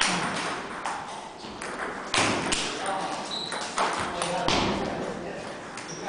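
Table tennis rally: the ball is hit with rubber-faced paddles and bounces on the table in a run of sharp clicks at uneven intervals. The loudest strikes come at the start, about two seconds in, and twice around four seconds, before play stops.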